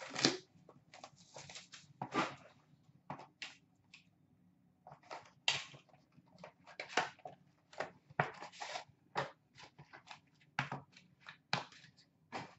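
Hockey card pack packaging being torn open and handled: irregular crinkles, rustles and small snaps of wrapper and cardboard, some of them sharp.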